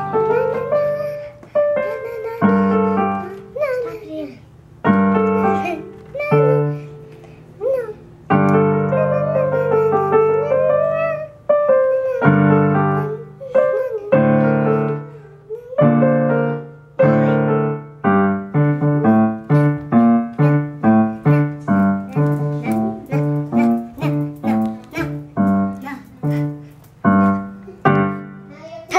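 A Casio electronic keyboard played with a piano sound: a child playing a piano piece, with slower held chords at first and quicker, evenly repeated chords at about two or three a second over the last third.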